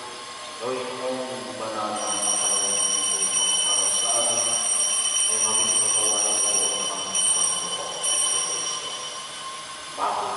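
Voices singing or chanting in a church, with a steady high-pitched whine that joins about two seconds in and fades out near the end.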